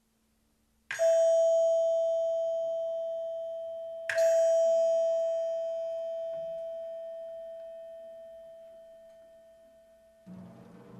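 Two strikes of a bell-like metal percussion instrument, about three seconds apart, each ringing the same single note and fading away slowly.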